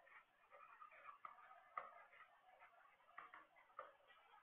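Faint scratching and a few light taps of a stylus writing on a tablet.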